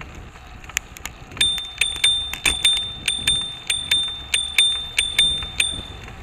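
Bicycle bell rung rapidly over and over, about three or four dings a second, starting about a second and a half in and stopping just before the end; each ding rings on the same clear, high pitch.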